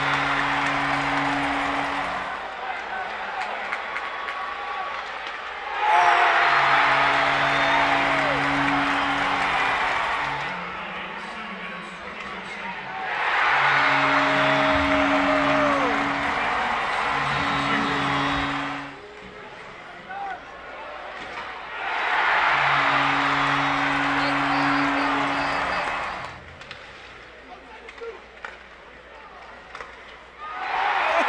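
Arena goal horn sounding in four long blasts of a few seconds each over loud crowd cheering, celebrating goals by the home team; the cheering drops away between blasts.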